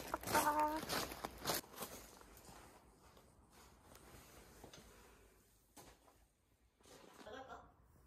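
A person's voice speaking briefly at the start. Then a long quiet stretch with a few faint, scattered taps, and a short bit of voice again near the end.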